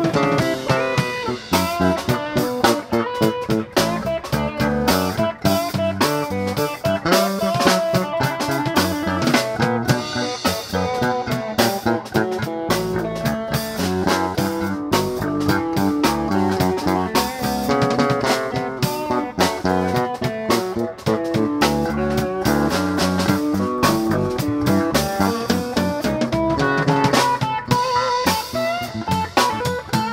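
Live instrumental funk played by an electric guitar, electric bass and drum kit, the guitar carrying the lead line over a steady groove.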